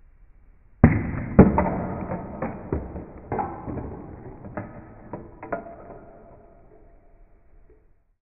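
A homemade coil gun fires its steel-rod projectile: a sudden sharp crack, then a run of irregular clattering knocks with a metallic ringing that fades over about six seconds as the rod strikes and bounces on a hard surface.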